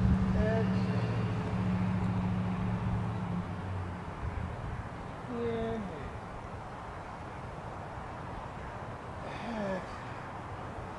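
A steady low engine hum that fades out about four seconds in, over outdoor background noise, with a few short gliding calls or voices in the distance.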